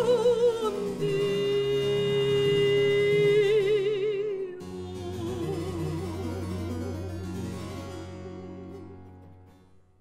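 Mezzo-soprano holding long, wide-vibrato notes over harpsichord and violone in the closing cadence of a Baroque song. A low bass note comes in about halfway, and the final chord dies away near the end.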